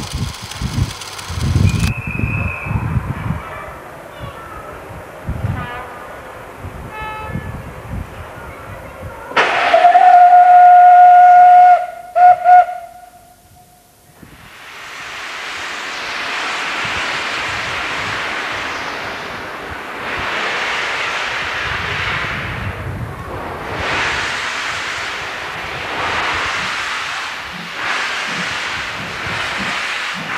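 Steam locomotive whistle: one loud blast of about two and a half seconds, then two short toots. Then the locomotive starts away with a steady hiss of steam, swelling and fading with its slow exhaust beats.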